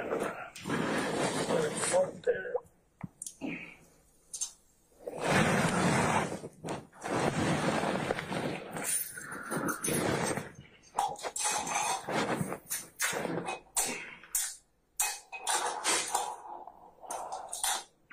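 Muffled, indistinct talk mixed with rustling and repeated clicks and clinks of handling noise, several dropouts between them.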